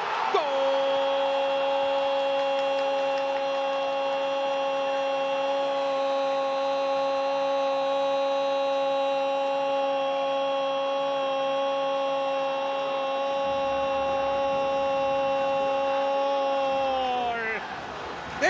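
A football commentator's drawn-out shout of "¡Gol!", one held note lasting about seventeen seconds and sliding down in pitch as it ends, announcing a goal.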